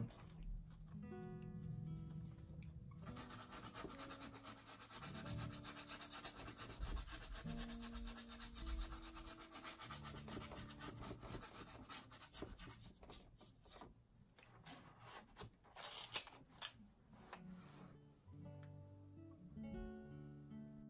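A flat brush scrubbing acrylic paint onto a stretched canvas: a dry, rasping rub of repeated short strokes, heaviest from a few seconds in until about two thirds of the way through. Soft guitar background music plays under it.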